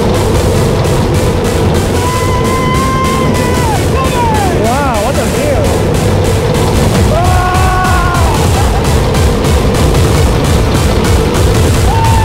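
A steel roller coaster ride heard from a camera on the train: steady loud rushing wind and track rumble. Riders let out a few long, held yells, one of them wavering, about two, four and seven seconds in.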